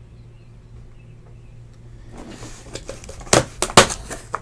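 Hands handling a cardboard shipping box: rustling cardboard from about halfway, then two sharp knocks near the end, the loudest sounds, over a faint steady low hum.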